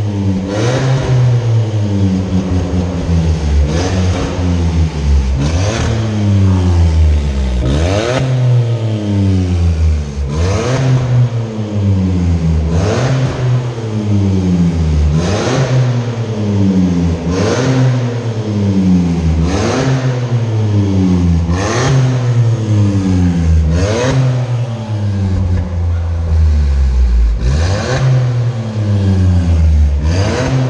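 Hyundai HB20's 1.0 three-cylinder engine revved repeatedly while stationary, with its remote-controlled exhaust cutout valve open so the exhaust sounds sportier than stock. Each rev climbs and falls back, about one every two seconds.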